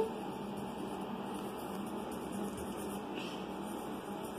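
Quiet room tone: a steady low hum and background hiss, with no distinct events.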